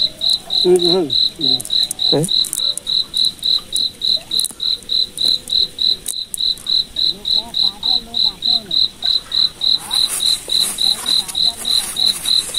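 A cricket chirping in a steady, even rhythm of about three to four short, high-pitched chirps a second.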